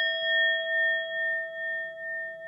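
A bell sound effect, struck once, ringing on with a slow pulsing waver as it fades: the notification-bell chime of a subscribe animation.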